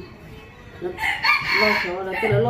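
A rooster crowing once, starting about a second in and lasting about a second.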